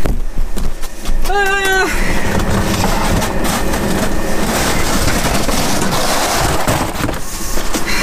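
Steady rushing noise with a low rumble inside a truck's cab, starting about two seconds in after a short vocal sound.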